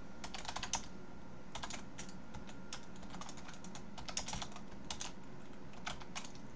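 Computer keyboard keystrokes, typing in short irregular bursts of clicks with brief pauses between them.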